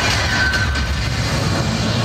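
Loud unveiling sound effect over a show stand's speakers: a deep, steady rumble under a sweeping hiss as the cover comes off the car.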